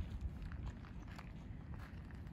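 Faint footsteps on loose, rounded river stones: a few soft crunches and clicks over a low rumble.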